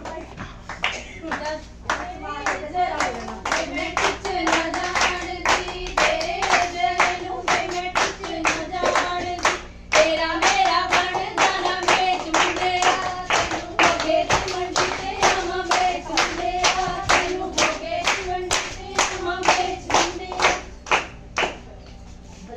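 A group of women singing a Punjabi Lohri folk song together while clapping their hands to a steady beat, about two to three claps a second.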